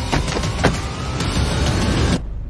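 A car driving off, its engine note rising steadily, with a few short knocks along the way.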